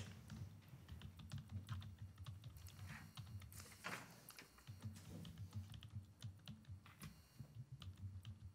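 Faint computer keyboard typing: irregular light key clicks over a soft low rumble of room movement.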